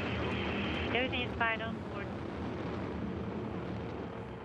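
Soyuz-FG rocket climbing after liftoff, its engines making a steady, even noise. Brief fragments of a voice come over it about a second in.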